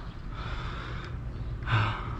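A person breathing out close to the microphone: a soft breathy exhale in the first second, then a shorter, sharper breath with a slight voiced hum near the end.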